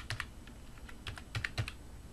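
Computer keyboard being typed on: a handful of separate key clicks, a couple at the start and a quick run of them a little after one second.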